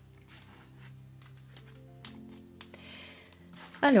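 Faint background music with soft held notes, and a few quiet clicks of paper tarot cards being handled on a table.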